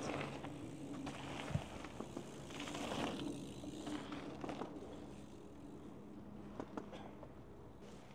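Mountain bikes rolling past on a dirt track, tyre noise swelling about three seconds in as a rider goes by, with a few sharp clicks and a faint steady low hum underneath.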